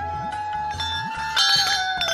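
Background music, a melody of long held notes over a steady beat. About one and a half seconds in, hand-rung brass temple bells ring out loudly over it.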